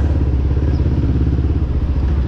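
Hanway Scrambler 250's single-cylinder, air-cooled four-stroke engine running steadily while the motorcycle is ridden at low speed.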